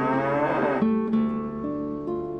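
A Holstein dairy cow mooing once, a call that rises in pitch and ends about a second in, over acoustic guitar music.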